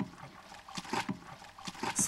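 Wooden plunger churning mare's milk in an aluminium milk can, a splashing, sloshing plunge repeated a couple of times a second: the beating that ferments the milk into airag (kumis).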